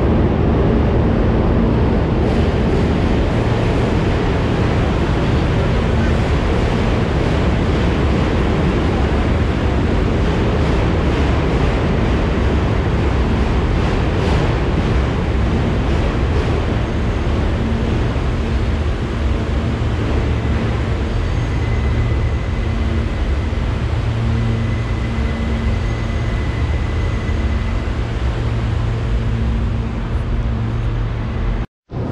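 Ambience of a busy subway terminal: a loud, steady rumble with a low hum under it. A thin high whine joins for several seconds past the middle.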